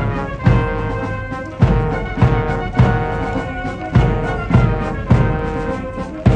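Guards military marching band playing a march live: sustained brass chords from trombones and other brass over a steady drum beat of nearly two beats a second.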